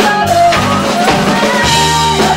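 A live rock band playing: drum kit, electric guitars and bass under a sung vocal line.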